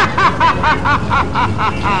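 A person laughing in a quick, even run of about eight high-pitched "ha" syllables that stops just before the end.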